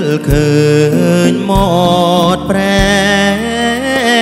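A man singing a slow romantic Khmer orkes song with a wavering vibrato, accompanied live by a band with steady bass and keyboard notes and a low drum beat about once a second.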